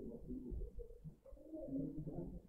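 Faint bird cooing: short, low notes repeated over and over.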